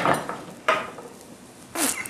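A few brief clatters of kitchen utensils and dishes on a countertop: one at the start, a sharp click under a second in, and another just before the end.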